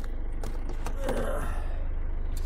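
Car engine running with a steady low rumble, heard from inside the cabin, with a few light clicks and knocks from the camera being handled.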